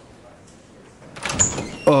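A wooden door opening about a second in, with a short high squeak as it swings, and a man's voice starting to speak near the end.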